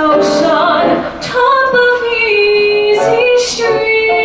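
A woman singing a musical-theatre ballad live into a microphone, moving between short phrases and a longer held note in the second half.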